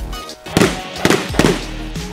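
Three gunshots in quick succession, about half a second apart, over background music.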